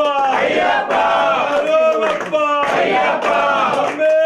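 A group of men chanting loudly together in a devotional chant, voices rising and falling in repeated phrases, with hand clapping.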